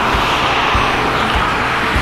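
Traffic on the road: a broad rush of car tyre and engine noise, over background music with a steady beat.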